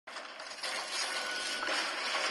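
Dense mechanical clattering noise that starts suddenly and grows louder in two steps, about half a second in and again near the end.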